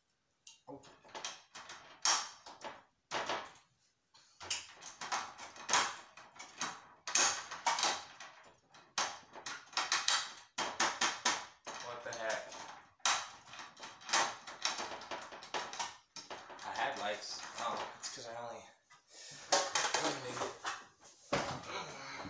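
Repeated clicks, knocks and rattles of a fluorescent tube being handled and fitted into a ceiling light fixture, coming in quick clusters with a few short pauses.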